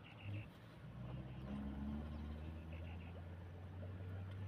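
Steady low hum of an idling vehicle engine, with faint voices over it.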